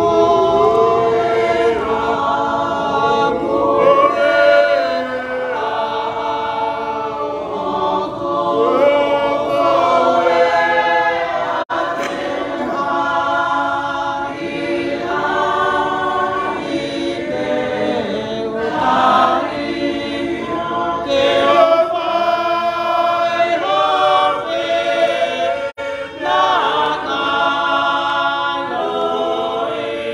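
A group of voices singing a hymn together, unaccompanied, in long held phrases with short breaks between lines.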